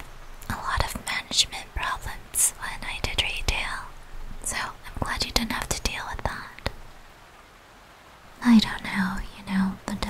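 A woman whispering close to the microphone, with small clicks between phrases; voiced speech returns near the end.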